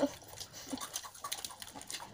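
Faint crinkling and small clicking crackles from hands tearing a piece of chicken apart on a paper wrapper.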